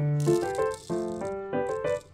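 Tiny seed beads pouring from a plastic bag into a small plastic container, a dense rattle for the first second or so and a few shorter rattles near the end, over soft piano background music.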